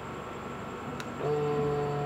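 A single click about a second in, then a steady low electric hum starts and holds: the Benelli TNT 600 motorcycle being switched on ahead of starting, its electrics powering up.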